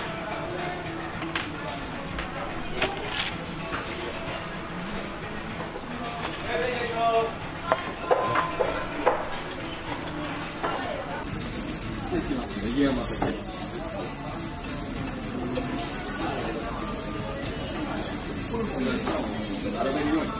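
Slices of meat sizzling on a hot tabletop yakiniku grill, a steady hiss that starts a little past halfway through, after a few light clicks of tongs and dishes. Restaurant chatter and background music run underneath.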